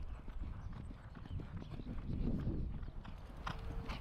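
Hoofbeats of ridden racehorses cantering on a sand track: a quick, steady run of dull thuds.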